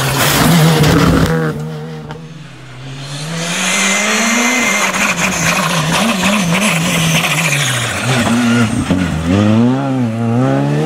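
Skoda Fabia R5 rally car's turbocharged four-cylinder engine at full stage pace. It passes close at the start, then on another run the revs rise and fall through gear changes, and it climbs hard in quick upshifts as it accelerates away near the end.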